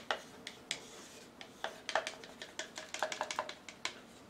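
A stick clicking and tapping against a plastic paint cup as thick poured-paint mix is scraped out into a smaller cup: scattered sharp taps, with a quick run of them about three seconds in.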